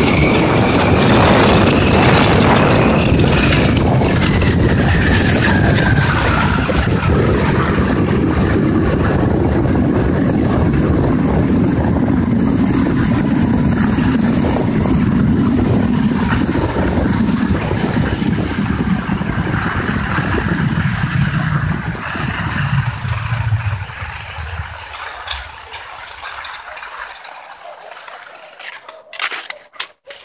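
Loud wind buffeting the microphone, with skis running in the groomed classic track, during a straight downhill run on cross-country skis. The rush fades after about 22 seconds and is much quieter by the end.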